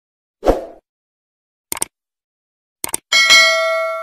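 Subscribe-button animation sound effects: a short thud, then two quick double clicks about a second apart, then a bell ding that rings with several pitches and fades slowly.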